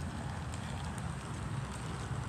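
Wind buffeting a phone's microphone outdoors: a steady, fluttering low rumble, with a couple of faint clicks.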